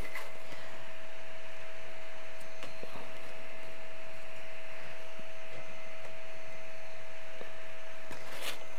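Steady fan hum with one constant pitched tone through it, even in level, with a couple of faint clicks.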